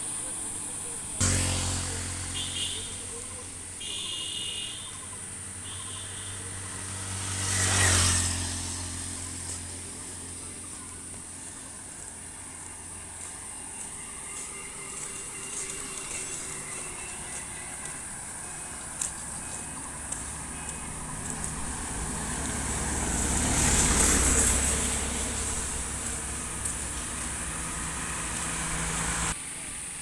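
Road traffic on a highway: vehicles passing close by with a low engine hum. Two louder pass-bys, about 8 and 24 seconds in, each swell up and fade away over a few seconds. A steady high-pitched hiss runs underneath.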